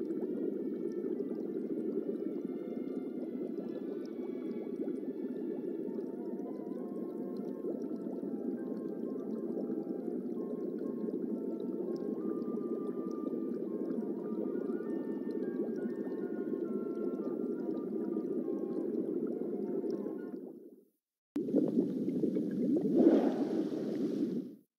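DVD menu's looping underwater aquarium ambience: a steady low drone with faint musical tones above it, fading out about 20 seconds in. After a short silence, a louder rushing swell of bubbles comes in as the menu transition starts, peaking shortly before the end.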